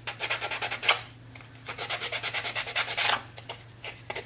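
Sandpaper rubbed by hand along the edges of a white-painted wooden block in quick, short back-and-forth strokes, roughing the paint to give it an aged look. Two runs of strokes with a brief pause about a second in.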